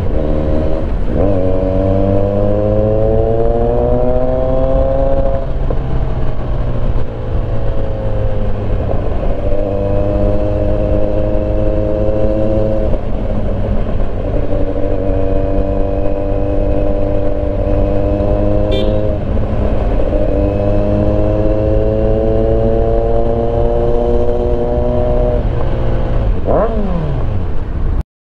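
Onboard sound of a Kawasaki Z900's inline-four engine under way, over steady wind rumble. The engine note climbs slowly through each stretch and drops back several times as the bike changes gear, with a quick rev that rises and falls near the end.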